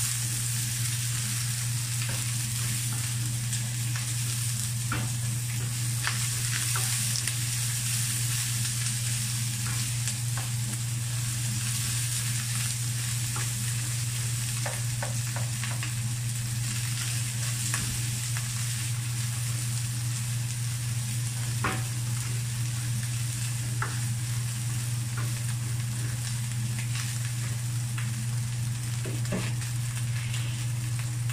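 Ground pork with onion and garlic sizzling in a nonstick frying pan while a spatula stirs and scrapes it, with occasional sharp clicks of the spatula against the pan. A steady low hum runs underneath.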